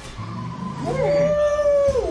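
A man's high falsetto 'ooooh' howl that swoops up, holds one high note for about a second, then falls away.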